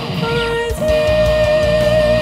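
Heavy metal instrumental passage: a lead melody plays a short note, then a higher held note with vibrato from about a second in, over drums and distorted guitars.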